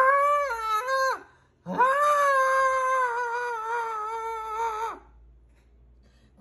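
A woman's high singing voice holding long vowel notes with no words: a short phrase that steps down and fades about a second in, then one long note held for about three seconds with a slight waver, ending about five seconds in.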